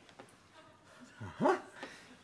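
A man's single short yelp-like vocal noise, rising and then falling in pitch, about a second and a half in, in an otherwise quiet room.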